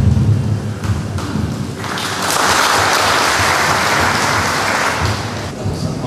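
Audience applauding in a hall: clapping swells in about two seconds in, holds for some three seconds and dies away near the end.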